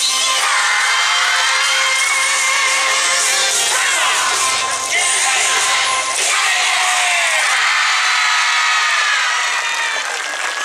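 Yosakoi dance music at the close of a routine, with many voices shouting and calling out together over it. The music's low end thins out past the middle while the voices carry on.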